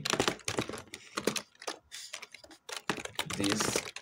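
Typing on a computer keyboard: keys clicking in quick, irregular runs as a short line of text is entered.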